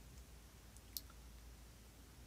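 Near silence: room tone with a faint low hum and one short, faint click about halfway through.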